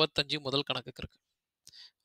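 A man's voice speaking for about a second, then a pause.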